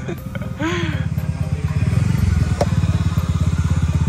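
A small engine running steadily nearby with a fast, even low pulse, getting louder about two seconds in; a short voice sound comes about half a second in.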